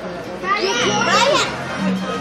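Young children's excited, high-pitched voices, squealing and chattering over one another, loudest about half a second to a second and a half in.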